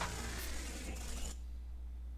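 Electronic loop mangled by the Pocket Dimension granulizer plugin with its UFO frequency-shift effect on: a noisy, swirling texture with a faint sliding pitch that cuts off suddenly about a second and a half in as playback stops. A steady low hum remains after.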